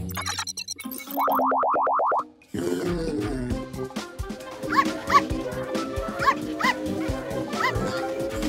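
Cartoon sound effects and score: about a second in, a quick run of about nine rising electronic chirps, then a jaunty music cue over which a cartoon puppy gives about five short, high yips.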